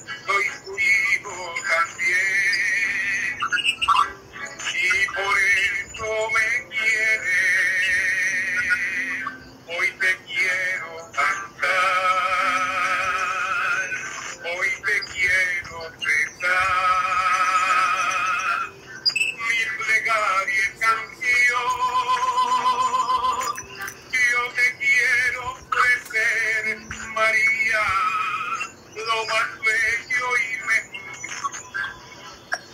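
A man singing a hymn to the Virgin Mary, accompanied by his own acoustic guitar, heard through video-call audio. He sings in held, wavering phrases with short breaks between them.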